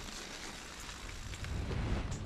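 Riding noise from a mountain bike on a gravel trail: tyres rolling over gravel and wind buffeting the action camera's microphone, a steady rushing noise with a low rumble that grows louder near the end.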